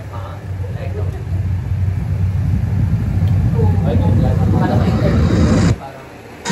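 A deep, low rumble in the interview film's soundtrack that swells steadily louder for about five seconds and then cuts off abruptly near the end, with brief voices and laughter over its last moments.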